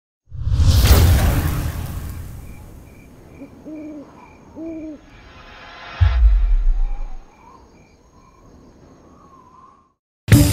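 Production-logo sound design: a loud whoosh that swells and fades, two short owl hoots, then a deep boom as the owl logo appears. Under it runs a faint high pulse repeating about twice a second, with soft wavering tones near the end.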